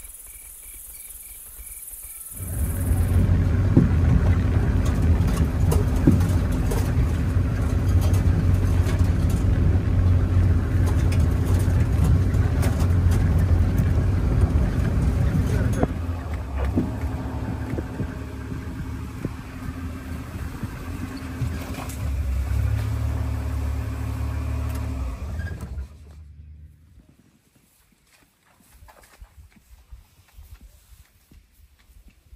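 Open safari vehicle's engine running as it drives off-road through bush, with scattered knocks and rattles; it starts about two and a half seconds in after faint insect chirping, eases off around the middle and stops near the end.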